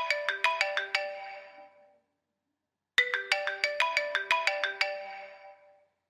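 Mobile phone ringtone: a short melody of quick, bell-like notes plays, stops for about a second, then plays again.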